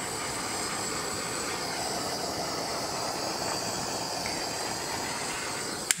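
Small handheld torch burning with a steady hiss, its flame played over wet acrylic pour paint to bring up cells in it.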